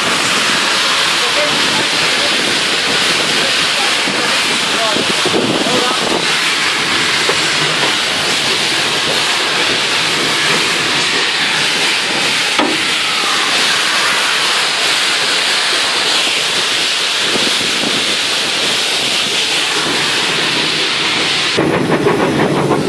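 Steady, loud hiss of a steam locomotive under way, heard from inside its cab.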